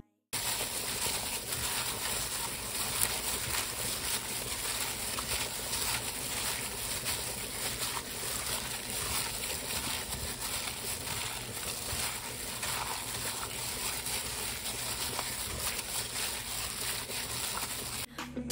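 Wet squishing and plastic crinkling from a plastic-gloved hand kneading seasoned raw chicken breasts in a glass bowl, a steady crackly sound that goes on with no break.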